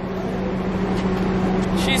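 A car idling, heard through its open door: a steady low hum under a rush of noise that grows slowly louder.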